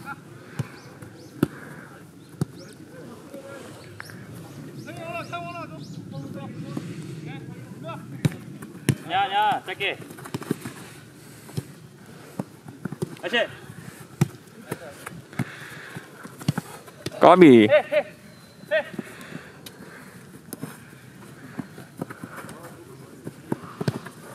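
Football being kicked on an artificial-turf pitch during a small-sided game: several sharp thuds of boot on ball, with short shouts from players scattered through, the loudest call about 17 seconds in.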